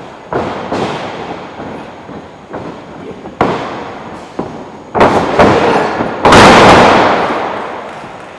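Pro wrestlers hitting a wrestling ring: a string of sharp thuds and bangs echoing in a large gym hall. The loudest comes about six seconds in as a wrestler is taken down onto the mat.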